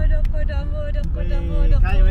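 Steady low road and engine rumble inside a moving car's cabin, under people talking.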